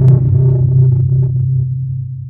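Deep low rumble of a cinematic boom sound effect, fading steadily.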